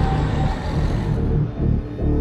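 Promotional trailer music with a pulsing low beat; its higher layers fade out about halfway through.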